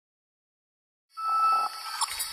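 Intro logo sound effect: silence, then about a second in a bright tone with a hiss comes in, loudest for about half a second before dropping lower.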